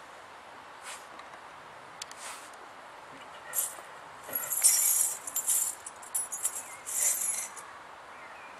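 Metal coins jingling and clinking as a handful is put into a small mug: a few light clicks at first, then a run of jingling bursts through the second half, loudest around the middle.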